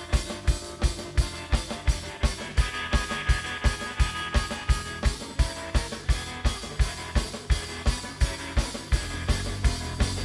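Live surf rock instrumental band: a drum kit keeps an even beat of about four hits a second under electric guitar and bass, with the low end filling out near the end.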